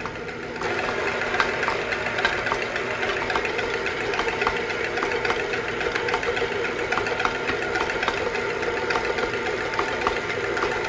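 Electric stand mixer running, its wire whip beating egg whites and sugar in a stainless steel bowl: a steady motor whir with scattered light ticks. It gets louder about half a second in.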